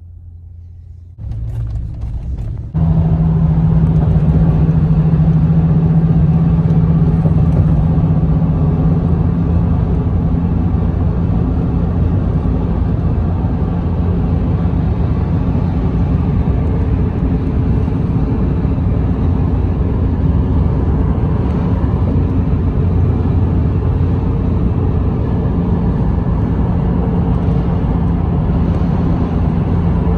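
Steady running rumble inside a moving vehicle at speed, with a steady low drone, starting suddenly about three seconds in after a quieter low hum.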